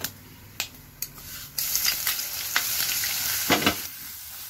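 Hot oil in a clay pot, with a steel spoon clicking against the pot a few times. About a second and a half in, a loud sizzle starts as a new ingredient hits the oil and carries on while it is stirred, with a short scrape of the spoon near the end.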